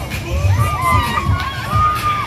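Riders on a swinging pendulum thrill ride screaming and shouting together, several long screams rising and falling in pitch and overlapping, over dance music with a steady beat.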